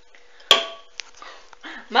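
A sharp knock about half a second in, with a short ringing tail, followed by a lighter click about half a second later.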